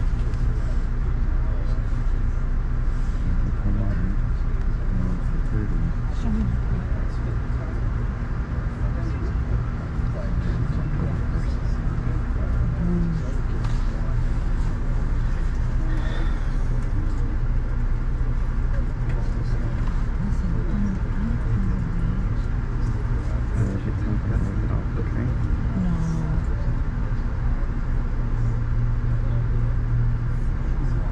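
Inside a passenger train car stopped at a station: a steady low drone from the train, with passengers talking quietly in the background.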